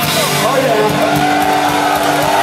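Loud live rock band playing, heard from within the crowd, with a high pitched line sliding up and down over the steady chords several times.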